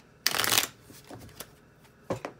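Tarot cards being shuffled or handled: one short, loud rustle of cards a quarter second in, lasting under half a second, followed by a couple of faint light taps.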